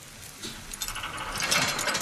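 Rapid clicking and rattling of a metal mechanism, like a ratchet. It starts about half a second in and grows louder.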